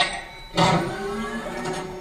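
A dance routine's backing track breaks off, leaving a gap of about half a second. Then a single sudden sound comes in and rings on, fading slowly.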